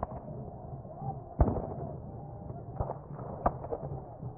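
Distant gunfire: irregular single shots, the loudest about a second and a half in and more near the end, over a steady low rumble.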